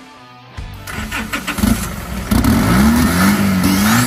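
Twin-turbo diesel engine of a longtail boat starting about half a second in, catching and running, then revved so its pitch rises and falls as it gets louder from about two and a half seconds in.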